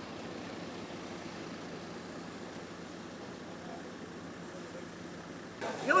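A large bus's engine idling: a steady, even rumble.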